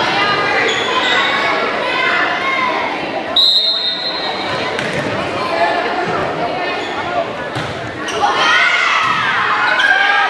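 Echoing volleyball gym with spectator chatter and shouting throughout. A short, steady, high referee's whistle sounds about three and a half seconds in, signalling the serve, followed by sharp hits of the volleyball.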